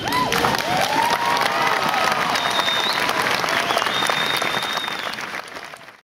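Large audience applauding after a spoken narration, dense clapping that fades out at the very end.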